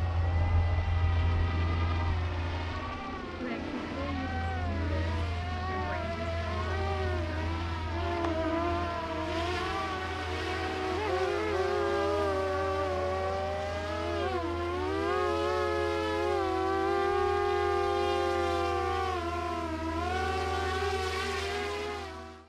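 Small electric multirotor drone's motors and propellers whining, several tones sliding up and down in pitch as the motor speeds change, settling into steadier tones in the second half.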